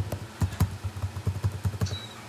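Typing on a computer keyboard: a quick, uneven run of key clicks, about six a second.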